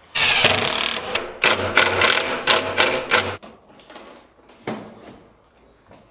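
Cordless drill backing screws out of a SIP panel's wood framing: one run of about a second, then a string of short bursts, before it falls quiet about halfway through.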